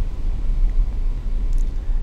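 A steady low rumble of background noise, with no speech over it.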